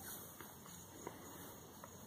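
Faint, quiet outdoor background with a few soft, scattered ticks of footsteps on grass as a person and a dog walk.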